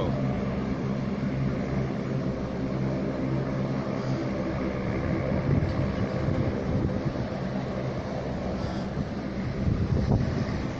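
Steady hum of an aircraft's engines as the plane taxis slowly before take-off, a constant low drone with noise over it and no change in pitch.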